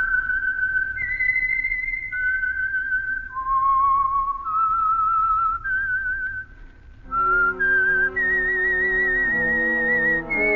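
A lone whistler whistling a slow, eerie signature melody of held notes with vibrato. About seven seconds in, sustained chords from an organ and band enter beneath the whistle.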